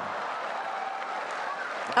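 Tennis crowd applauding steadily as the match is won.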